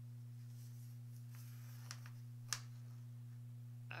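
Quiet room with a steady low hum; embroidery floss drawn through hooped fabric gives a faint, drawn-out rustle about a second and a half in, followed by a single sharp click.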